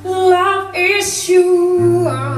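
A woman singing a melodic phrase into a microphone, with the guitar accompaniment almost gone; an acoustic guitar comes back in near the end.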